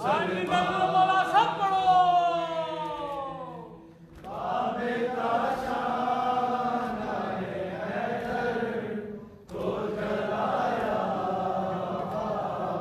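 Men's voices chanting a noha, a Shia mourning lament, in long held melodic lines. The first line slides slowly down in pitch over about four seconds. After a short break, a second phrase is sung, and a third follows a brief pause about nine and a half seconds in.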